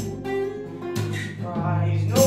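Larrivée acoustic guitar strummed, a few chords about a second apart left ringing, with a reverberant tail from the submarine's steel compartment.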